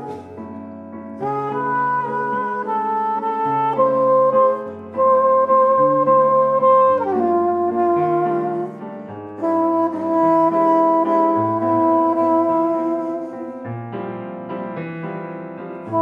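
Soprano saxophone playing a slow melody of long held notes over piano accompaniment, a jazz duo ballad. Some saxophone notes are held for several seconds, with a drop in pitch about seven seconds in, while low piano notes change roughly every second beneath.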